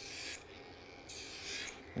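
Electric pet nail grinder filing a toy poodle puppy's claw: two short raspy hisses, one at the start and another about a second in, lasting about half a second each.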